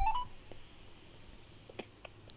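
A short run of electronic phone-line beeps stepping down in pitch as the call connects, then a quiet open telephone line with faint hiss and a few small clicks.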